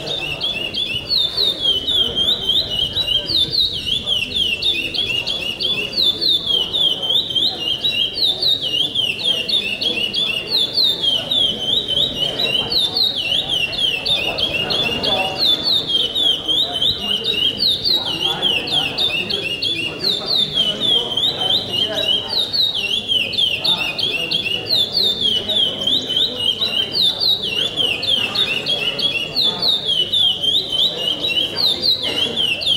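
A caged songbird of the 'pardo pico-pico' song type sings without a break. It repeats a short phrase of quick, high, downward-slurred notes again and again.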